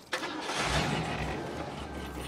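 A car engine starting with a brief burst of noise, then settling into a steady low idle.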